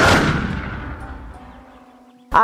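Cinematic transition sound effect: a deep boom with a whoosh right at the start that dies away slowly over about two seconds, over faint held music notes.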